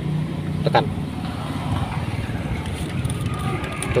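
Steady low hum of a running engine, with one word spoken under a second in.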